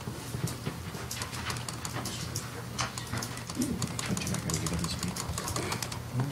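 Meeting-room background noise: a steady low hum with scattered small clicks and rustles, and no speech.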